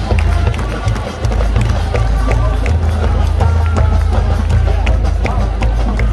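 Marching band playing on the field, brass with regular sharp drum strikes, over a heavy low rumble.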